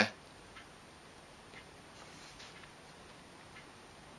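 Quiet room with a few faint, soft mouth clicks, irregularly spaced, as a person tastes a small chunk of chipotle chilli butter.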